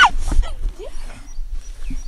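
A high-pitched laugh ends right at the start, followed by quieter breathy vocal sounds. Short, high chirps of small birds repeat through the second half over a low rumble of wind on the microphone.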